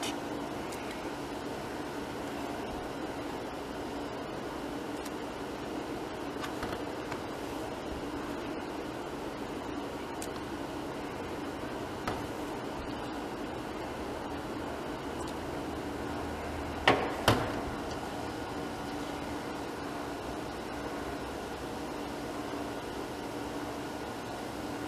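Steady low hum and hiss of kitchen background noise, with two sharp clicks close together about two-thirds of the way through.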